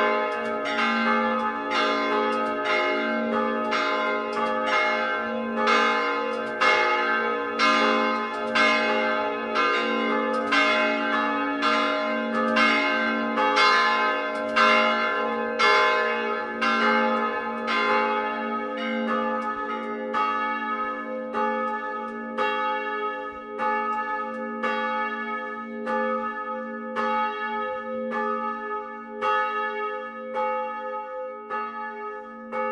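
Three swinging bronze church bells ringing together in full peal, heard close from inside the bell tower: a 460 kg bell tuned a1, a 240 kg bell tuned c2 and a 100 kg bell tuned f2. Their strokes overlap about once a second, and the ringing grows somewhat quieter in the last third.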